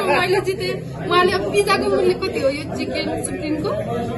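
Speech only: women chatting.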